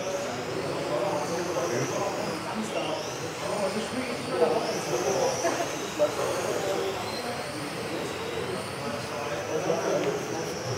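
RC model race cars running on the track, their motors whining high and rising and falling in pitch as they speed up and slow down, over the murmur of voices in the hall.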